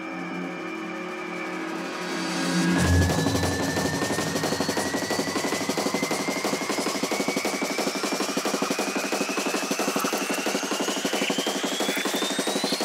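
Neurofunk drum and bass build-up in a DJ mix. Held synth chords stop about three seconds in and give way to a deep bass hit, then a rising sweep climbs over a fast pulsing roll, building toward the drop.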